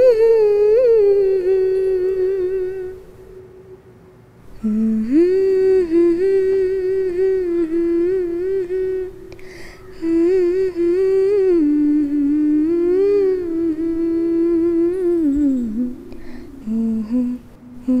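A woman humming a slow melody in long phrases, sliding between notes, with short pauses between the phrases.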